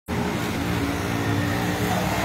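Steady low mechanical hum over a constant rush of noise.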